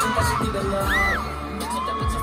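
Live K-pop concert music recorded from within the audience: heavy drum and bass hits under a male singer's amplified vocal, with fans screaming. A deep bass note holds for about half a second about a second in.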